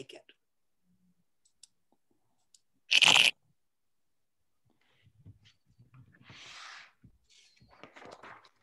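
Online bridge program's card-dealing sound effect: one short, loud rasping burst about three seconds in as the next board is dealt. A fainter rustle follows around six to seven seconds.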